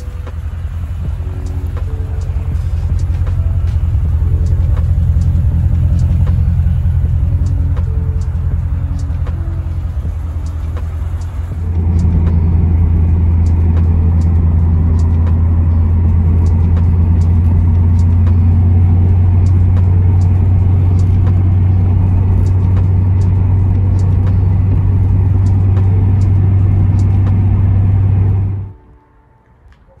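A C4 Corvette's V8 engine running with a steady low drone. About twelve seconds in it becomes a louder, even drone heard from inside the cabin while cruising, and it stops abruptly near the end.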